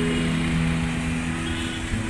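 Low rumble of a moving vehicle's engine and road noise, under a held low note of background guitar music.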